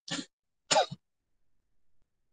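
A person clearing their throat in two short bursts, about two-thirds of a second apart.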